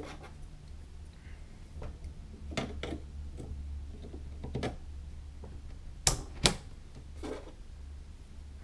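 Plastic clicks of DDR3 ECC memory modules being pressed into motherboard DIMM slots, the slot retention tabs snapping shut. There are several separate clicks, the loudest pair about six seconds in, over a low steady hum.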